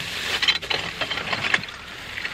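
Ceramic plates and broken glass clinking and scraping together as they are handled in a plastic tote, with several sharp clinks over a steady rustle of plastic bags.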